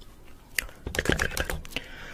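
A quick, irregular run of sharp clicks and taps, starting about half a second in.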